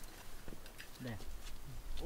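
Low wind rumble on the microphone that builds about halfway through, with a few light clicks and knocks and one short spoken word.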